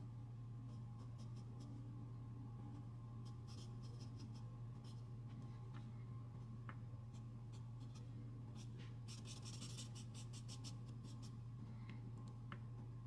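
Short, faint scratching strokes of a pointed drawing tool on charcoal-covered drawing paper, coming in scattered bursts with a quick, dense run of strokes near the end. A steady low hum sits underneath.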